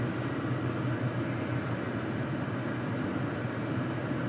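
Steady low hum with an even hiss inside a parked car's cabin, from the running vehicle and its ventilation.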